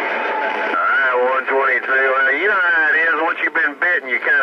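Another station's CB transmission coming through the Stryker SR-955HP's speaker: a narrow, radio-sounding band of static as the carrier keys up, then a man's voice talking from about a second in.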